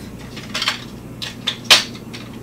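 Hard plastic sewing-machine extension table being handled beside the machine: a few short sharp clicks and knocks of plastic, the loudest near the end.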